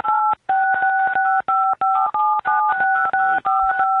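Phone keypad tones: a rapid run of about twenty short two-note DTMF beeps as a text message is typed on the phone. They come through a phone line.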